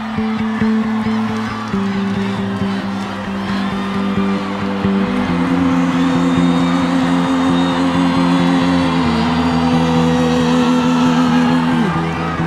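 Live stadium rock music at the start of a song: held low synth chords change twice in the first five seconds over an early pulsing beat, and a tone slides downward near the end. A large crowd whistles and cheers underneath.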